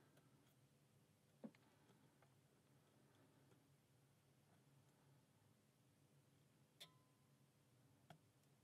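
Near silence, with a few faint short clicks of a hook pick working the pins of a brass five-pin pin-tumbler padlock under a tension wrench. The clearest click comes about one and a half seconds in and another near seven seconds.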